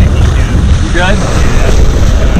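Wind buffeting the microphone over water rushing and splashing along the hull of a moving boat, as a blue marlin is held by the bill alongside and towed through the water.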